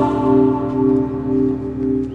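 Background score: two low notes held steadily as a soft sustained drone, fading slightly toward the end.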